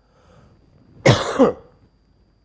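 A man's short, breathy laugh in two quick bursts about a second in.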